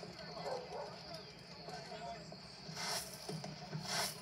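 Film soundtrack heard through a TV speaker and picked up by a phone: faint voices and street ambience, then two short noisy bursts, about three seconds in and again near the end.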